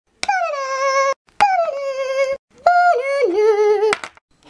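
A high-pitched voice sings three held notes, each starting and stopping abruptly with a click. The first two slide down and then hold steady, and the third steps down partway through.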